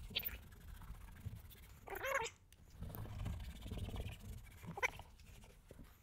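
Applicator pad rubbing conditioner into a leather car seat: a faint, uneven low rubbing, with a brief squeak about two seconds in.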